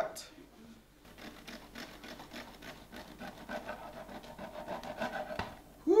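A bread knife sawing back and forth through a freshly baked loaf on a wooden cutting board, a steady rasping that grows slowly louder, with a short knock near the end.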